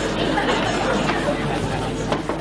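Indistinct chatter of many voices, a studio audience murmuring.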